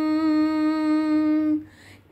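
A woman singing, holding one long note steady in pitch, which stops about a second and a half in.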